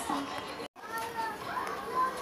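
Faint children's voices in the background, with a sudden brief dropout to silence at a cut about two-thirds of a second in.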